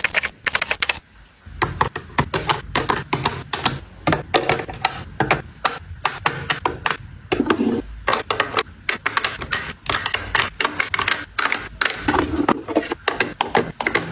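Rapid, continual clicks and taps of plastic and metal makeup items (lipstick tubes, powder compacts) being set down and slid into clear acrylic organizer drawers.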